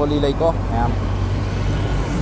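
A voice speaking briefly in the first second, over a steady low hum of street traffic.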